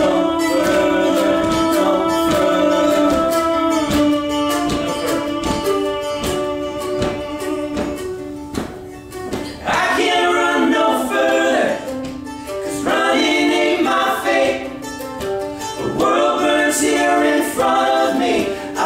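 Three male voices singing in close harmony over a strummed acoustic guitar. Long held notes in the first half, a brief quieter stretch about nine seconds in, then fuller, moving phrases.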